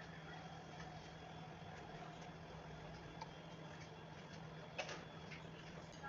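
Faint crackling fizz of root beer foaming over ice cream in glasses, under a steady low hum, with one sharp click about five seconds in.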